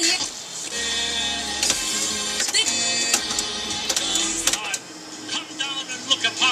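A restored 1948 Cadillac radio, converted to AM/FM stereo, playing a broadcast station through its speaker: music with a voice. A few sharp mechanical clicks come from its chrome preset push buttons being slid and pulled out.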